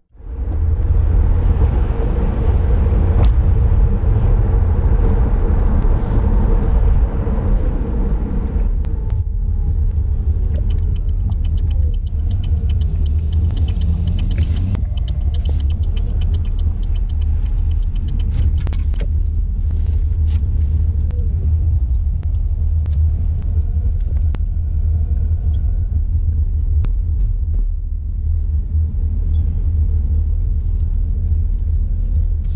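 Road rumble inside a moving car's cabin: a steady deep drone of tyres on the road. It is fuller for the first several seconds and eases about nine seconds in as the car slows.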